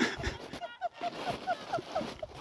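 A woman laughing in a rapid run of short, high-pitched bursts, about four a second.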